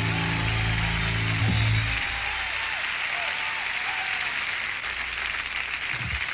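A live band's held final chord, with electric guitar, rings and stops about two seconds in. A studio audience applauds throughout and keeps clapping after the music ends.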